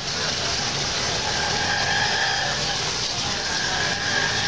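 Small pedestal garden fountain running: a steady splash of water as its bell-shaped jet falls into the bowl.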